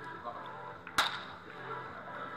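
Pool balls struck hard: one sharp crack about halfway through, with a short ring after it, over a steady low room background.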